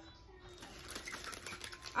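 Quiet room with faint rustling and light taps from snack packets being handled, under a low murmur of voices.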